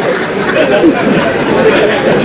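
Speech and chatter: several voices talking at once, with no other distinct sound.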